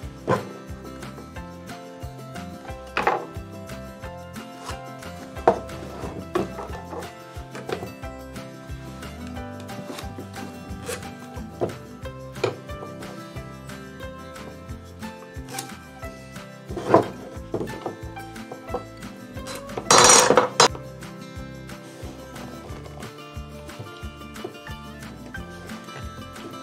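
Background music throughout, over scattered light knocks and clinks of a wooden block and steel square being handled and set down on a workbench while layout lines are pencilled on it. About 20 seconds in there is a brief, louder scraping noise.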